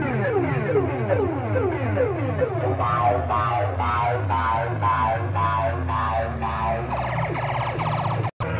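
Siren-style electronic sound effects played very loud through banks of horn loudspeakers. It starts with quick falling sweeps, about three a second, then changes to a warbling tone that pulses about twice a second and a fast rattle near the end, all over a steady low bass drone.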